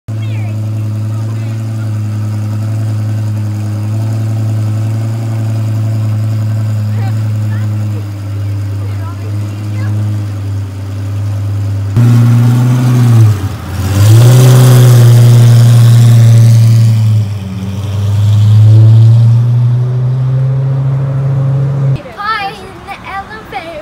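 Lamborghini sports car engine idling with a steady, even note, then revved from about halfway through: the pitch dips and climbs, and it holds loud at high revs twice.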